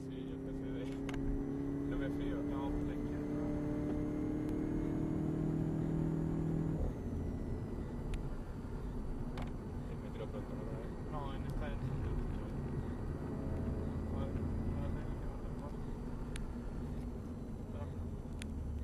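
Volkswagen Golf VII GTI's turbocharged 2.0-litre four-cylinder heard from inside the cabin under acceleration, its note rising slowly. About seven seconds in the rising note cuts off abruptly as the driver lifts off, leaving a lower, rougher mix of engine and road noise.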